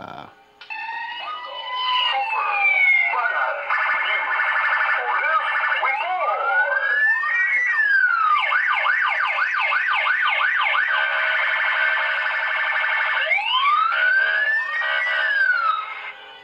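Siren sound effect: a slow wail rising and falling, then a run of fast yelping sweeps in the middle, then another slow wail near the end, over a steady drone.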